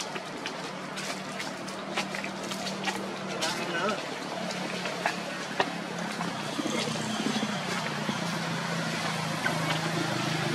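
A steady low engine hum with scattered sharp clicks over it.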